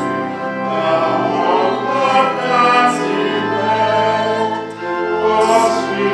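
A choir singing slow church music with long held notes.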